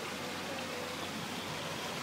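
Steady noise of water trickling from small rock waterfalls into a garden koi pond.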